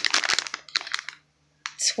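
Crinkling and crackling of a plastic bag of disposable razors being handled, a quick burst of crackles that dies away about a second in, with a few more near the end.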